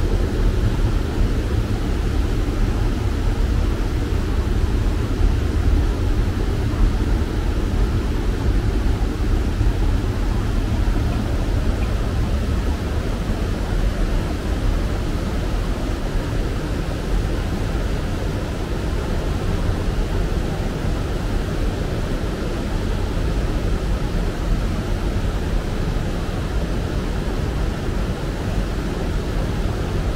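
Boat motor running steadily underway, a continuous low rumble with a fainter hiss above it.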